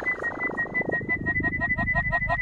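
Breakdown of a fast hard-trance track: a held high synth note over quick, evenly repeating ticks and a filtered noise sweep, with no kick drum.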